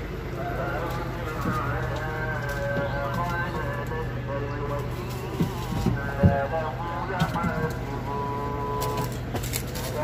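Steady low hum of an idling refrigerated box truck, with a few sharp knocks about five to six seconds in as the load is handled.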